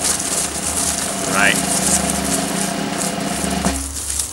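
A man's voice making a drum roll: a sustained rolled, fluttering "brrrr" held on one pitch, with a short rising note about a second and a half in, stopping shortly before the end.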